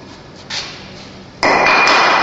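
Pneumatic clamp on a chisel mortiser working: a short hiss of air about half a second in, then a sudden loud rush of air with a steady high ringing tone near the end.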